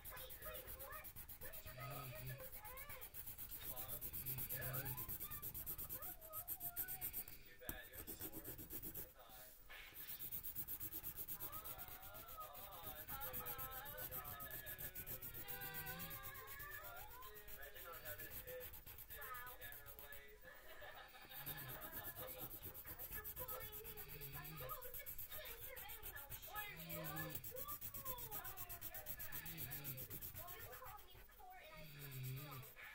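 Faint background voices with a little music, the pitch wavering like speech and singing, over a steady hiss.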